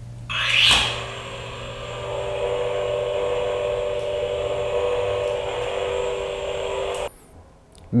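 Lightsaber-style effect: a rising whoosh as it switches on, then a steady electric hum that cuts off abruptly about seven seconds in.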